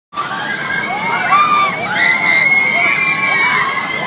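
Many riders screaming together on a swinging, spinning carnival thrill ride, long high screams overlapping one another.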